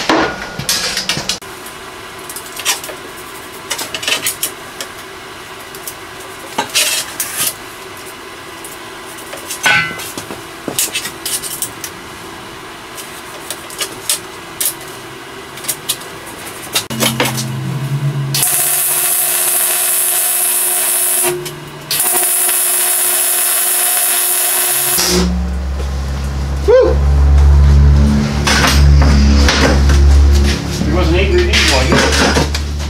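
Steel parts clinking and tapping on a metal welding table, then a welding arc sizzling in two bursts of about three seconds each as a round paddle holder is welded onto the steel frame. Music with a low bass comes in near the end.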